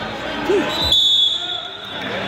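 A man shouting 'you', then a single dull thud just before a second in, from wrestlers' bodies on the mat.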